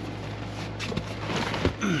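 Rustling and a few soft knocks of hands working a covered rear seat cushion into place around the seat-belt buckles, with a couple of short clicks near the end.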